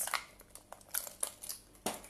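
Brow brush stroked briskly through eyebrows: a quick string of short scratchy strokes and clicks, several a second.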